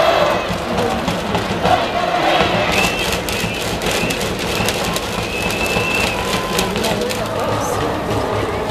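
A school cheering section in a baseball stadium crowd chanting together over band music. From about three seconds in comes a run of sharp hits.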